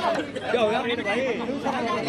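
Several voices talking and calling out over one another: chatter from the players and onlookers around a kabaddi court.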